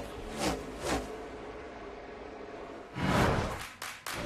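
Stock car V8 engines racing past close by, two cars in quick succession with a falling pitch, about half a second and a second in. Near the end, a louder swelling whoosh.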